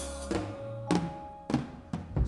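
Drum kit played with a band: about five sharp drum hits spread unevenly over two seconds, with the band's held notes ringing between them.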